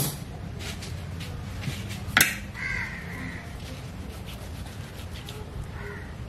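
A crow cawing a little past the middle, with a fainter call near the end, over a steady low background hum. A single sharp click comes just before the first caw.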